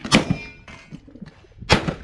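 Two gunshots about one and a half seconds apart from a cowboy action shooter firing at steel targets, the first followed by a brief metallic ring.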